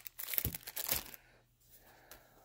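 Plastic packaging crinkling and rustling as packs of craft supplies are handled, in irregular bursts with a few sharp clicks for about the first second.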